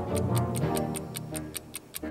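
Quiz countdown timer sound effect ticking rapidly, about eight ticks a second, over orchestral background music that fades away near the end.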